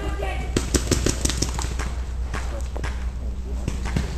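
Paintball markers firing: a quick string of sharp shots, several a second, starting about half a second in, then scattered single shots, over a steady low rumble.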